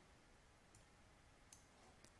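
Near silence with two faint computer-mouse clicks, about three-quarters of a second and a second and a half in.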